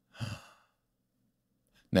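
A man's short sigh: one brief breathy exhale with a little voice in it, just after the start.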